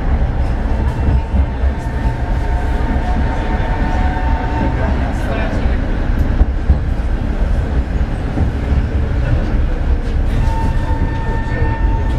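Tram running along street track, heard from inside near the front: a steady low rumble, with a thin steady whine that comes in twice, in the first half and near the end.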